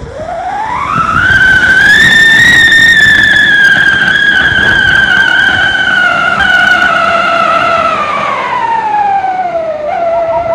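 Whistling ground fountain firework burning: a loud whistle that climbs in pitch over the first two seconds, holds, then slowly sinks toward the end, over the hiss of its spark jet.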